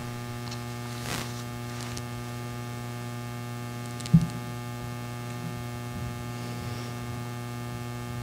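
Steady electrical mains hum in the sound-system feed, with one sharp bump about four seconds in as the headset microphone is handled.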